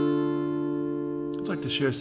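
A strummed guitar chord ringing out and slowly dying away, its notes held steady.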